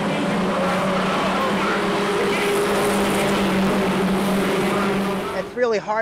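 A pack of four-cylinder mini stock race cars running around a paved oval short track, a steady engine drone holding one pitch, which cuts off suddenly about five and a half seconds in.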